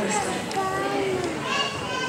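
People talking, with children's voices among them, in a large hall.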